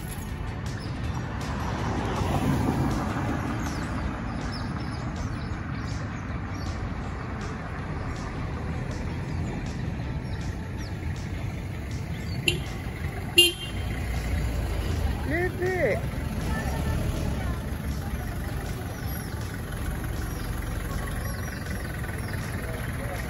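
Street ambience with many short, high chirps in the first half. Two sharp clicks come about halfway through, then a brief pitched call. In the second half a small truck's engine approaches as a growing low rumble.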